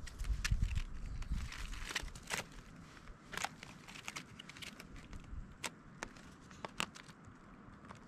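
Bundle of bare grape vine cuttings being handled and tied with twine: irregular light clicks and crackles as the woody sticks knock and rub together and the string is pulled round them, with a low rumble in the first second or so.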